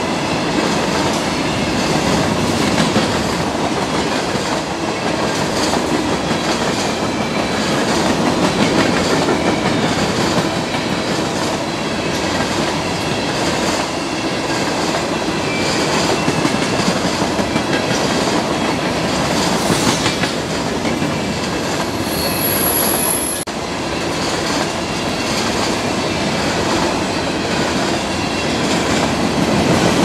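Freight train of covered hopper cars rolling past at close range: a steady rumble and clatter of steel wheels over the rails, with faint wheel squeals now and then.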